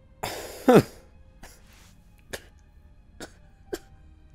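A man lets out a sudden, choked cough: a breathy burst ending in a short voiced sound that drops in pitch, as he is overcome with emotion. A few short, faint clicks follow near the end.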